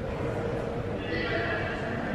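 Indistinct voices in a large, echoing hall, with a higher-pitched voice coming in about a second in.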